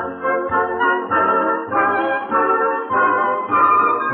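Instrumental passage of a song: a band plays a melody over a bass line, with about two bass notes a second.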